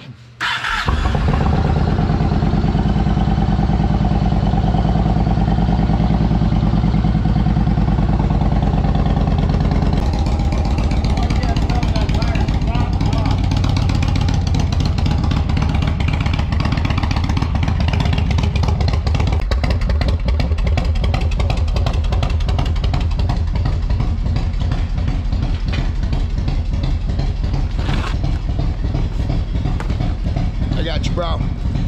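Cruiser motorcycle engine started cold: it catches about half a second in and then runs loudly at a steady idle to warm up. The idle note changes slightly around ten seconds in.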